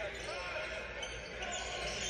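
Faint audio of a basketball game playing back from the highlight footage: a ball bouncing on a gym floor, over a steady low hum.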